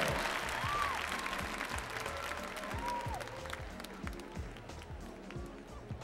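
Arena crowd applauding after a gymnastics routine, the applause dying away over the first couple of seconds, with faint music and scattered sharp knocks in the hall.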